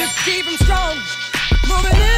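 Hip hop music played on a DJ mix: a rapped vocal over a beat with a heavy kick drum.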